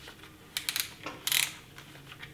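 Dye i5 paintball mask being handled as it is pulled snug onto the head: a few faint clicks, then a short rustling scrape of plastic and rubber.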